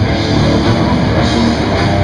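Live heavy metal band playing loud: distorted electric guitars, bass and drum kit in a dense, steady wall of sound.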